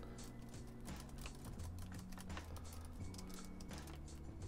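Faint typing on a computer keyboard, irregular key clicks, over quiet background music with low held notes.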